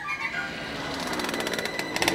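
Go-kart's small engine buzzing with a rapid rattling pulse as it approaches, growing steadily louder.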